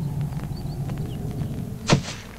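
Cartoon jump sound effect: a steady low rumble while airborne, then one sharp thud of a landing near the end.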